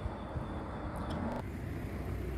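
A car engine running with a low, steady rumble.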